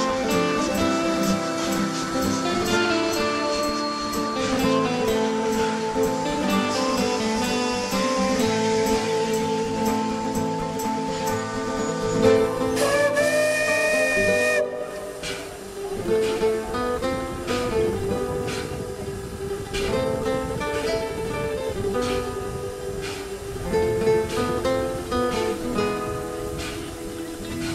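Guitar music playing, with a steam locomotive's whistle sounding once about twelve seconds in, held for a little over two seconds with a hiss of steam, then cutting off sharply.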